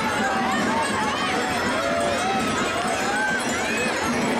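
Rapid, continuous clatter of Gilles stamping in wooden clogs, with the jingle of the bells on their belts, under a crowd's chatter and calls.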